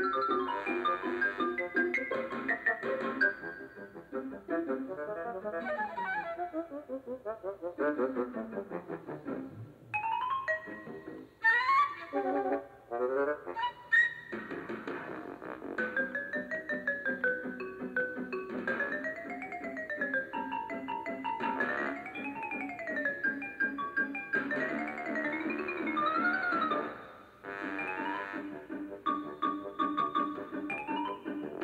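Background music: a melody of quick notes running up and down in rising and falling runs.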